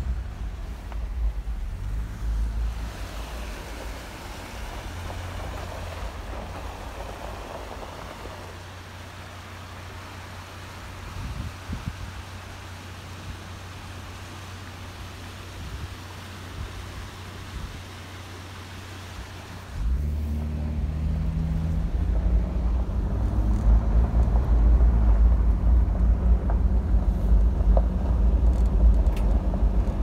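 A vehicle driving on a gravel road, heard as a low rumble of engine and tyres from inside the cab. A much quieter stretch of even noise fills the middle. About two-thirds through, the driving rumble starts again suddenly and louder, with small ticks of gravel near the end.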